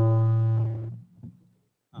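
Steady low electrical hum with many overtones through the hall's microphone and PA system, fading out about a second in. A short vocal 'uh' starts at the very end.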